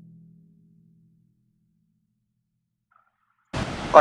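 Low held notes of orchestral music fade out within the first second, followed by dead silence. About half a second before the end, a steady rushing outdoor noise cuts in abruptly.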